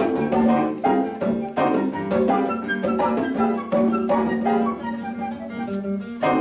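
Live chamber music: classical guitar and grand piano playing a slow piece, notes plucked and struck about every three-quarters of a second over a held low note.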